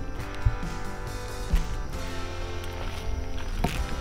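Background music: sustained notes that change every second or so at a moderate level.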